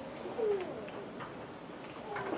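A child's voice making a brief falling hum about half a second in, over quiet classroom room sound with a few faint light ticks.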